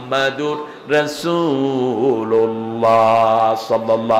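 A man's voice chanting in a melodic, sung style through a microphone, with long held notes and gliding changes of pitch.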